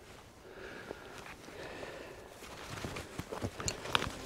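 Footsteps through dry moorland grass, with soft rustling and a few sharper steps near the end.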